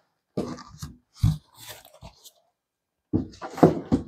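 Styrofoam shipping cooler scraping and squeaking against its cardboard box and the tabletop as it is pulled out and set down, in several short bursts with a dull bump a little over a second in.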